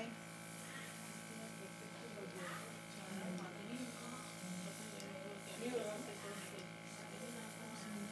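A steady electric buzz, with faint voices talking in the background.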